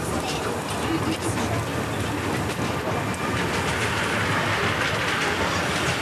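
Miniature steam railway train running, heard from an open passenger carriage: a steady rumble and rattle of the carriage on the track. A hiss swells in the second half.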